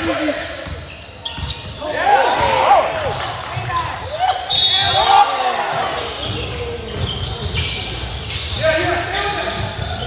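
Basketball game in a large gym: a ball dribbling on the hardwood court, with players and spectators shouting in short bursts, echoing in the hall.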